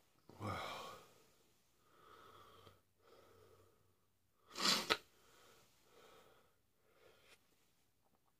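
A man breathing in and out through the burn of a Carolina Reaper pepper, with one sharp, forceful blast of breath about halfway through, the loudest sound here.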